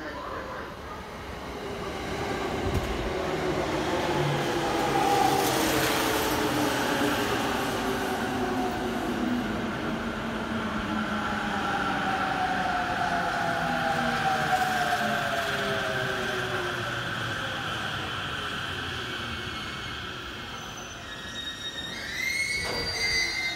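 JR Musashino Line electric commuter train pulling into the platform and braking to a stop: wheels rumbling on the rails, loudest as the front cars pass, with a whine that falls steadily in pitch as the train slows.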